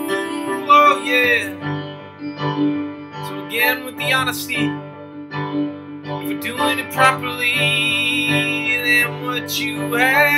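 A man singing a slow song over a steady instrumental accompaniment, with a long held note that wavers with vibrato near the end.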